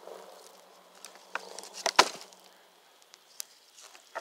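Campfire embers crackling: scattered small snaps of burning wood, with one loud pop about two seconds in.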